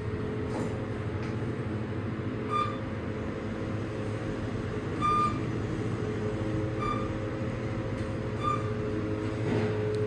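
KONE machine-room-less traction elevator car travelling down, with a steady low running hum inside the cab. Four short single-pitch beeps sound about two seconds apart as the car passes each floor on its way down.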